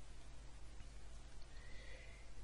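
Faint room tone: a steady low hiss and hum, with a faint thin whine coming in near the end.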